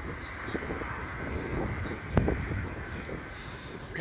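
Steady low outdoor rumble, with a single sharp thump a little after two seconds in.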